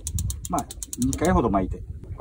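Baitcasting fishing reel clicking rapidly, about ten clicks a second, as it is engaged and wound in after the rig reaches the bottom. The clicks stop a little over a second in. A man speaks briefly over them.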